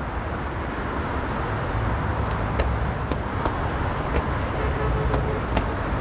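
City road traffic: cars driving past with a steady rumble and hiss, and a few light ticks from about two seconds in.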